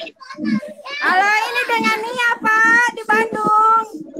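A woman's excited, high-pitched squeals and cries of 'ah', short at first and then drawn out into long high cries from about a second in.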